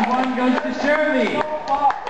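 People's voices talking and calling out, with no clear words.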